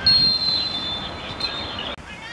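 Referee's whistle: one long, high, steady blast that starts suddenly, sags slightly in pitch and lasts about two seconds, with players' voices faint underneath.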